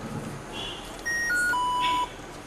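An electronic chime plays three clear notes, each lower than the one before, starting about a second in. The last note is held for about half a second and stops near the end.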